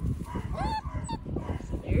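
Vizsla puppy giving one short, high cry that rises and falls, about half a second in, over rustling and knocking from the puppies jostling against the phone.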